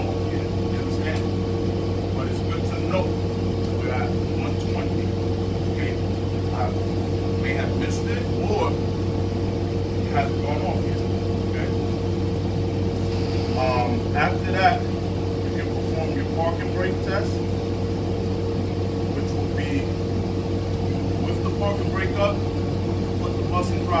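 A city transit bus's engine idling, a steady low hum heard from inside the passenger cabin, with faint talking over it.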